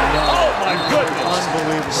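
Basketball being dribbled on a hardwood arena court amid the crowd's voices.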